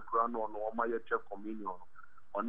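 Speech only: a person talking in quick phrases with short pauses.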